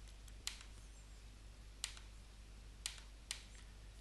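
Computer mouse clicking: a handful of faint, single clicks at uneven gaps as points of a spline shape are placed one by one, over faint steady hum.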